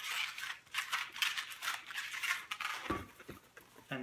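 Two inflated latex modeling balloons rubbing and squeaking against each other as they are twisted together by hand, an irregular run of short squeaks and scrapes.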